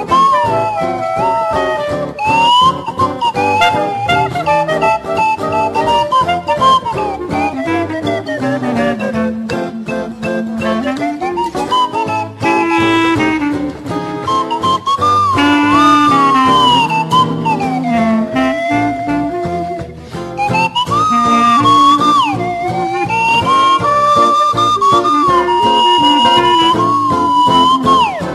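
Slide whistle playing a sliding, swooping lead melody over a band of acoustic guitar, string bass and washboard keeping a brisk beat.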